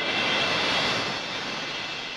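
A rushing whoosh of noise that swells quickly at the start and then slowly fades.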